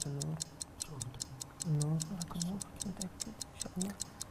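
Quiz-show thinking-time sound effect: a clock ticking quickly and evenly, about five ticks a second, under low, quiet men's voices.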